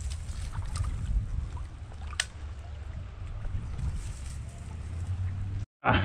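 Steady low rumble of wind buffeting the camera microphone over river water, with one sharp click about two seconds in. The sound cuts out briefly just before the end.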